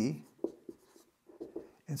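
Dry-erase marker scratching and squeaking on a whiteboard in several short strokes as letters and an equals sign are written.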